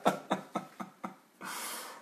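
A man laughing in a run of short breathy bursts that fade away, followed near the end by a long breath out.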